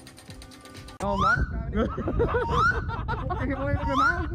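Rapid ratchet-like clicking for about a second, then a loud voice whose pitch swoops up and down, over music.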